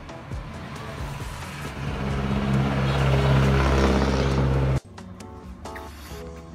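A motor vehicle engine running and growing louder for about three seconds, then cutting off suddenly near the end, with background music.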